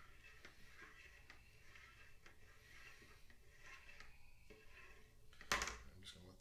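Faint sounds of a plastic spoon slowly stirring mead in a plastic fermenting bucket, with a few light ticks. A short, louder knock comes near the end.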